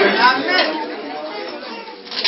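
Indistinct speech and chatter, trailing off and growing quieter toward the end.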